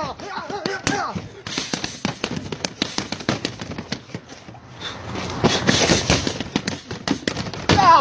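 A rapid flurry of punches landing on a BOB (Body Opponent Bag) freestanding mannequin, a fast string of sharp slapping hits that grows denser in the second half. A man's voice is heard briefly near the start.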